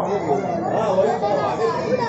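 Chatter of many voices talking over one another, with no single speaker standing out.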